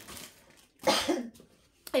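A woman coughs once, about a second in: a single short, sharp cough.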